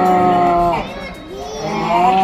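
A loud, low, buzzy voice-like tone held at one pitch, which slides down and stops a little under a second in, then a second, shorter held note starts near the end.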